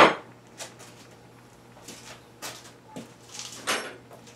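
Tools being handled on a workbench: a sharp knock as a metal drill bit is set down at the start, then several lighter clinks and rattles as another bit is picked up.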